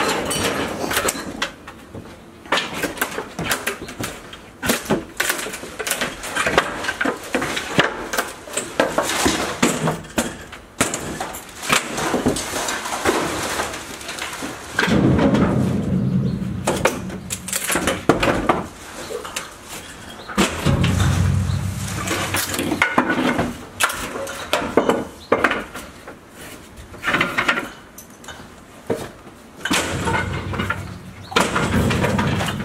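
Wooden lectern being broken apart by hand: a long run of knocks, cracks and clatters of wood, with two longer, deeper stretches about halfway through.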